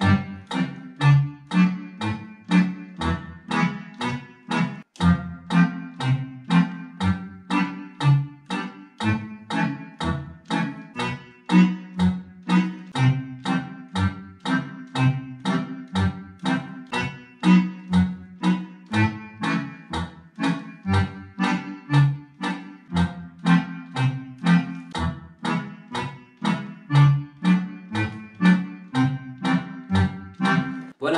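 Roland FR-4x digital accordion's left-hand bass section playing a march pattern at 120: a single bass note alternating with a chord in short, evenly spaced notes. It steps through the major chords up the scale and back down.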